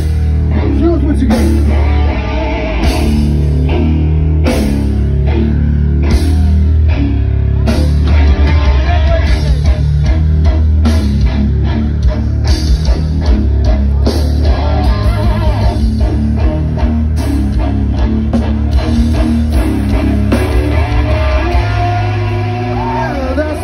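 A live rock band playing loud through a concert PA: guitars, a heavy bass and a drum kit, its hits coming faster in the second half.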